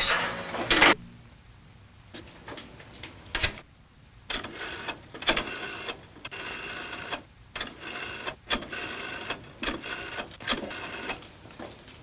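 Old wall telephone ringing in a run of short, uneven bursts, seven or so, each under a second long.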